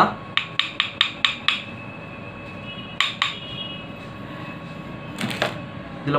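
Two handmade neem wood combs knocked together to show how they sound: a quick run of about six sharp wooden clicks, then two more, and a last short cluster near the end.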